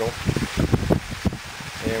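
Wind buffeting the camera microphone in uneven gusts, with a man's voice starting near the end.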